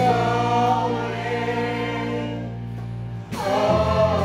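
Lead and chorus voices sing long held notes over a steady instrumental accompaniment. The chord breaks off briefly near the end and a new one comes in.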